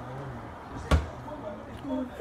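A kitchen cabinet door shut once with a single sharp knock about a second in.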